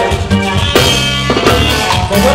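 Live salsa-style band playing: keyboard and bass over timbales and drum kit, with a cymbal crash ringing a little before the middle.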